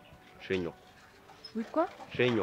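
Short vocal exclamations from a person: a brief falling-pitched cry about half a second in, then a few quick pitched syllables near the end.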